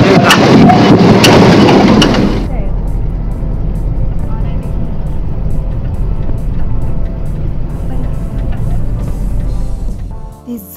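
Loud wind and road noise inside a moving car with the window open. About two and a half seconds in it drops sharply to a steady low car rumble under faint background music.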